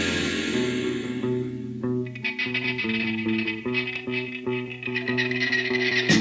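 New-wave rock instrumental passage: the full band sound thins out, and from about two seconds in a guitar plays a run of separate picked notes over the bass.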